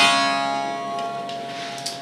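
Bağlama (long-necked Turkish saz) with its final strummed chord ringing out and slowly fading at the end of the song. There is a faint click near the end.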